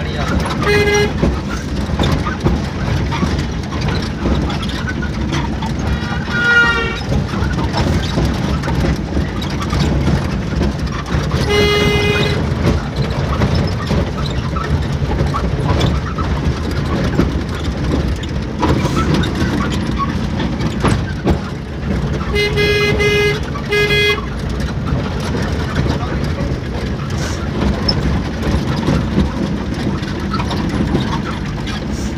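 Engine and road rumble inside the cab of a moving vehicle, with short horn toots: one about a second in, one around the middle, and three quick ones close together about two thirds of the way through.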